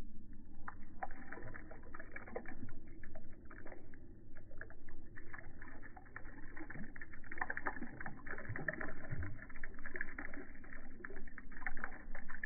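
A thin stream of liquid pouring into shallow pond water, making an irregular patter of small splashes.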